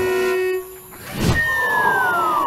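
Cartoon sound effects: a held horn-like tone that cuts off about half a second in, a short whoosh, then a falling whistle that starts high about a second and a half in and glides steadily down in pitch, the classic sound of a cartoon fall.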